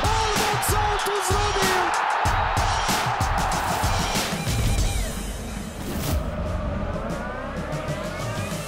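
Background music with a steady beat, ending in a rising sweep near the end.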